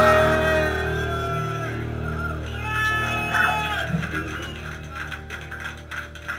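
Electric guitar and bass letting a held chord ring out and slowly fade, with a few higher guitar tones over it and light taps near the end.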